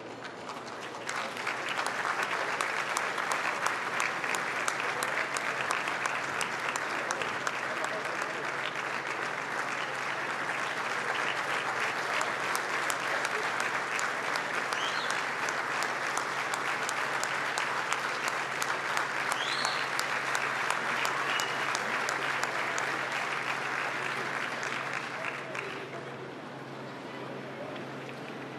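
Large audience applauding steadily. The clapping builds up about a second in and tapers off near the end.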